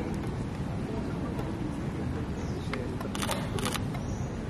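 Steady low outdoor rumble, with a quick run of sharp clicks about three seconds in.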